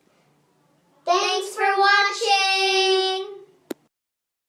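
A child's high voice singing out two syllables, the second held long at a steady pitch, starting about a second in; a single sharp click just after it ends.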